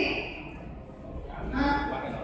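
Only speech: a woman lecturing into a handheld microphone, with a short break in her talk in the middle.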